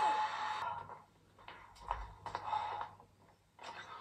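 A loud passage with a steady tone cuts off suddenly just under a second in, leaving faint, irregular sighs and breaths.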